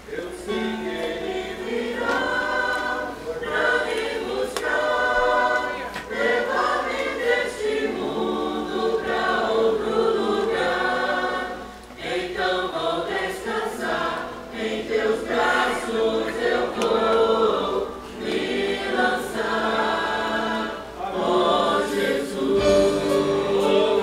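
Church choir singing a hymn, many voices together, with brief breaths between phrases.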